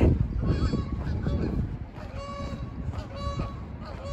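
Canada geese honking: about five short calls of steady pitch, repeated every second or so.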